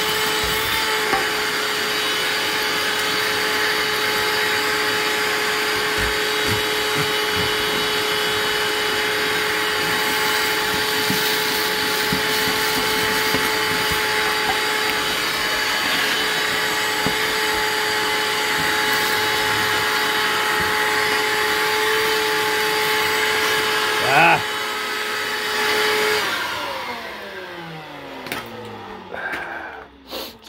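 Vacuum cleaner running steadily with a whine, its hose drawing soot and creosote out of a plugged wood stove flue collar. There is a brief rattle about three-quarters of the way through. Near the end the motor is switched off and spins down, its pitch falling.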